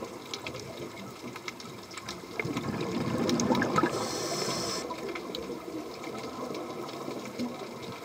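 Underwater ambient sound: a steady wash of water noise with scattered faint clicks and crackles, and a brief spell of brighter hiss about four seconds in.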